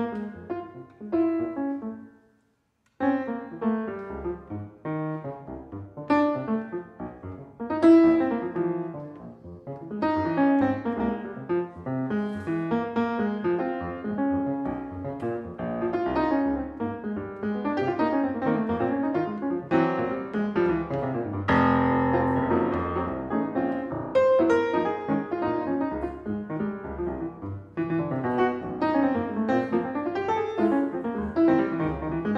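Solo acoustic grand piano playing a jazz arrangement. There is a short break about two seconds in, then continuous playing with a loud, ringing chord a little past the middle.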